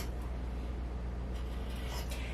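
Scissors cutting through a football jersey along a marked line, a quiet, even sound with no distinct snips, over a steady low hum.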